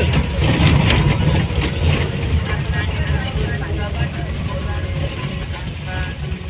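Vehicle driving over a dirt road, heard from inside the cabin as a steady low rumble, with music playing over it.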